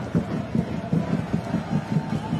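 Football stadium crowd noise with a fast, even rhythmic pulse of about five beats a second.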